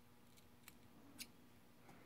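Two faint snips of small fly-tying scissors, about two-thirds of a second and just over a second in, the second louder: the tying thread being cut at the head of the fly after the whip finish.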